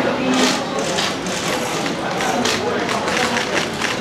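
Indistinct voices in the room, with several short sharp clicks scattered through.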